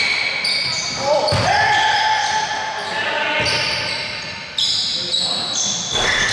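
A basketball bouncing on a gym floor, with sneakers squeaking on the court as players move, echoing in a large hall.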